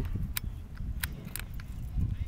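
Low rumbling handling noise from a moving handheld camera, with a few sharp clicks scattered through it, like light knocks against metal.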